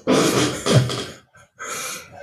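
A man laughing heartily in breathy bursts for about a second, then a shorter breathy laugh near the end.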